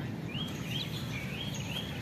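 Birds chirping in the trees: a few short rising chirps over steady outdoor background noise.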